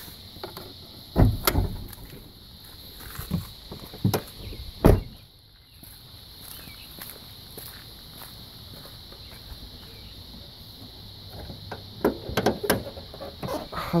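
A pickup's hood being released and opened: a knock about a second in as the release is pulled, a loud door thump about five seconds in, then a run of latch clicks and clunks near the end as the heavy hood is lifted.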